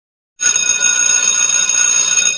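Alarm clock bell ringing, starting suddenly about half a second in.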